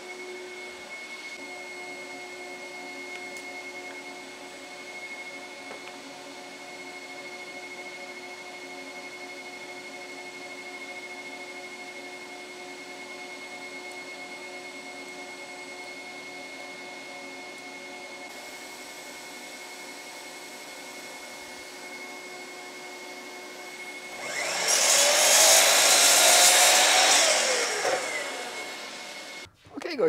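A workshop dust extractor runs steadily, a hum with a few constant whine tones. About 24 seconds in, a sliding mitre saw makes a loud cut through a wooden strip, its motor pitch bending for about five seconds before the sound cuts off suddenly.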